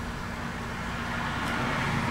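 Steady low hum and hiss of background room noise, growing slightly louder toward the end.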